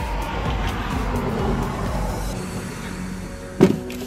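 Quiet background music over a steady low rumble, with a brief knock or clatter near the end.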